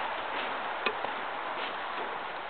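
Steady background hiss with one faint click a little under a second in.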